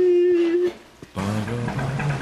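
A woman's voice holding one long, steady sung note that stops a little before the middle. After a brief pause, background music begins about a second in.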